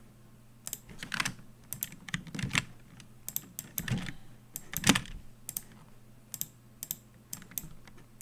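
Computer keyboard keys and mouse buttons clicking at an irregular pace, with a few harder key presses among lighter taps. A faint steady low hum runs underneath.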